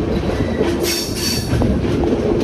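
Passenger train coaches running over the track with a steady rumble of wheels on rail. A brief high-pitched wheel squeal comes about a second in, the flanges grinding as the train rounds a curve.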